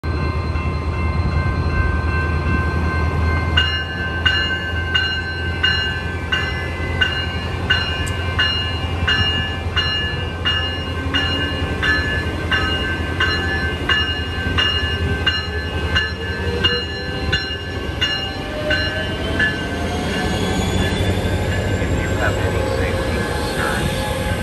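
Siemens Charger SC-44 diesel locomotive running with a steady low engine hum while its bell rings about twice a second for some fifteen seconds, starting about four seconds in. From the middle on the engine note rises in pitch as the train pulls out and gathers speed past the platform.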